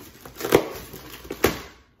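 Plastic packaging of a bundle of clothes hangers being handled and torn open by hand, with two sharp crackles, about half a second and a second and a half in.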